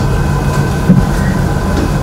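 Steady low rumble of background noise with a faint hum of two steady tones, heard through video-call audio during a pause in speech.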